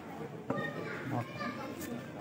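Background chatter of several voices overlapping, with a single sharp knock about half a second in.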